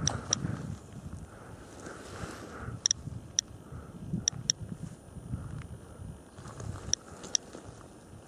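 Handheld radiation dosimeter giving short, irregular clicks, about ten over several seconds, each one a detected particle at a normal background of about 0.34 µSv/h. A low rumble of footsteps and handling runs underneath.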